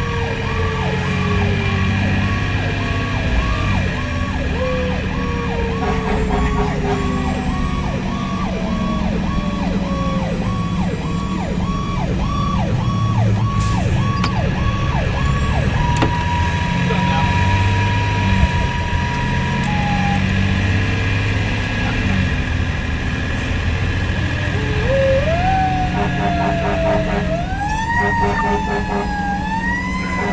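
Fire engine sirens heard from inside the cab over the diesel engine and road noise. A slowly falling wail comes first, with a rapid pulsing tone through the first half. A steady tone sounds around the middle, and rising, repeated wail sweeps come in near the end.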